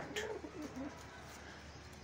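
A fantail pigeon's soft, short coo in the first second.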